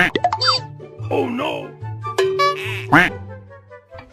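Cartoon comedy sound effects laid over bouncy background music: a quick rising swoop at the start and another near three seconds, falling slide-whistle-like tones, a wobbly quacking voice-like sound about a second in, and a held beep just after two seconds.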